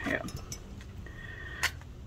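Quiet room hum with a single sharp click about one and a half seconds in, as a stainless-steel foot file and its stick-on sandpaper pads are handled.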